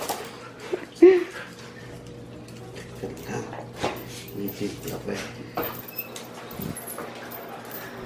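Dogs whining in short bursts, excited at being leashed for a walk, with a metal chain leash clinking and scattered sharp clicks.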